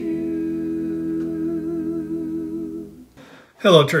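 A cappella vocal quartet holding a final chord, largely hummed, steady with a slight waver, fading out about three seconds in. A man's speaking voice follows near the end.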